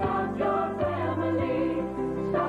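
A choir singing the closing line of a commercial jingle over instrumental backing, holding sustained notes.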